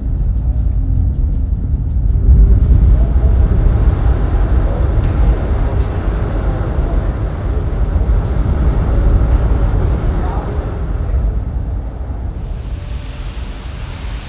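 A large fire of burning EPS sandwich panels in a Room Corner fire-test room: a loud, steady low rumble of flames, with faint crackles in the first few seconds.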